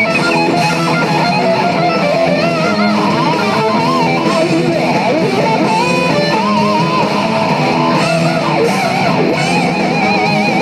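Distorted electric guitar, a Gibson Les Paul, playing a lead line of held notes with wide vibrato over a full rock backing track with bass.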